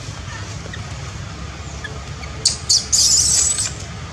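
Baby macaque giving two quick high squeaks about two and a half seconds in, then a shrill squeal of about a second, over a steady low background rumble.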